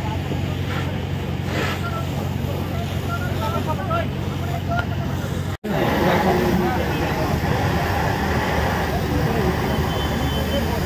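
Onlookers talking over a steady low engine drone at a car fire. After a brief cut about halfway, a louder, steady rushing noise takes over as a fire hose sprays water onto the smoking, burnt-out car, with voices still heard.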